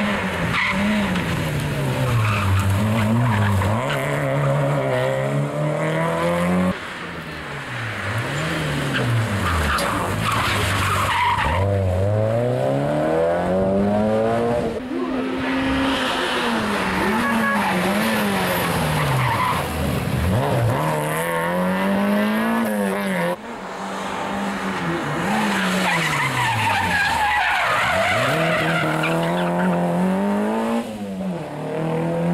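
Rally car engines revving hard, their pitch climbing and falling again and again through gear changes and braking as several cars in turn drive the stage at speed. Tyres squeal and skid in the corners.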